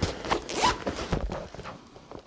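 A paper talisman lit with a lighter, crackling and rustling in a quick, irregular run of small snaps that thins out toward the end.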